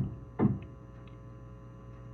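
Steady electrical hum of the studio microphones, a set of fixed tones under a lull in the talk, with one brief vocal sound about half a second in.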